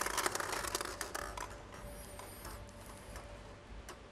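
Plastic draw balls clattering against each other and the glass bowl as one is picked out, a rapid run of clicks over the first second and a half. Then fainter plastic clicks and squeaks as the ball is twisted open.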